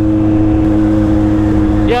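Kawasaki Z800 inline-four engine running at a steady cruising speed while riding, with a low wind rush on the microphone.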